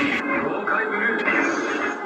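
Performance soundtrack played through stage loudspeakers: music mixed with voices, changing abruptly just after the start.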